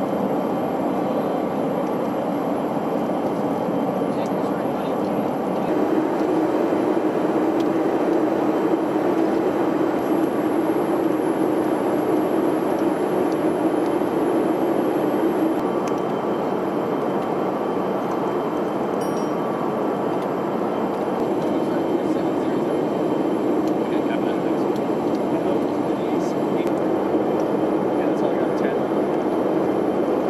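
Steady in-flight cabin drone of a Boeing E-3 Sentry: engine and airflow noise fill the mission cabin, with a thin high whine over it. It grows slightly louder about five seconds in.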